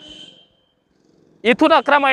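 A man's voice narrating, broken by a short pause of near silence about a second long in the middle before the speech starts again.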